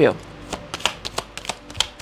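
A tarot deck being shuffled by hand: a run of quick, light card snaps, about four or five a second.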